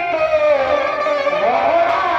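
Live, amplified Bhojpuri folk stage song: a singer holds a melody line into a microphone over instrumental accompaniment, with a rising glide in pitch about one and a half seconds in.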